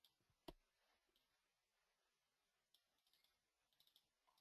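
Near silence broken by a single faint computer-mouse click about half a second in, with a few fainter clicks near the end.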